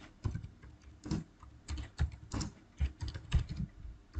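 Typing on a computer keyboard: irregular keystrokes, a few each second.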